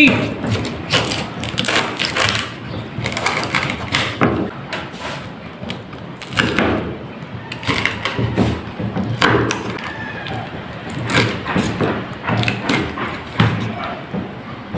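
A knife chopping crispy fried pork belly on a wooden board: irregular thuds and cracks as the blade goes through the crackling skin.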